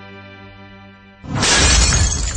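A steady held music chord breaks off a little over a second in, when a loud glass-shattering sound effect cuts in.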